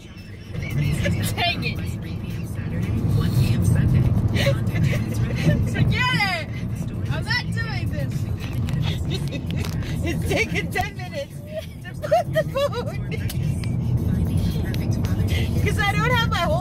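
Steady low rumble of a car's cabin, with clicks and scrapes of a phone being handled close to the microphone.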